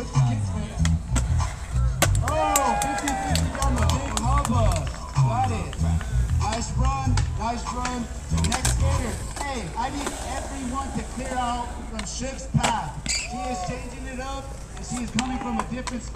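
Hip-hop music with a heavy bass beat, with voices, and sharp clacks of a skateboard popping and landing on concrete over it; the bass beat drops away about nine seconds in.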